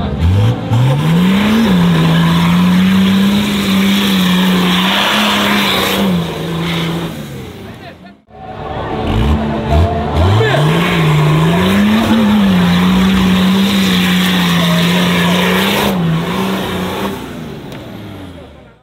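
Nissan Patrol's diesel engine revved hard and held at high revs under full load as it climbs a muddy trench. The engine note rises steeply, holds with small dips, cuts off abruptly about eight seconds in, then rises and holds again in the same way.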